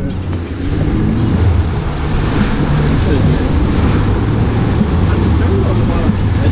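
Rushing, churning water of an Intamin river rapids raft ride, with a steady low rumble underneath.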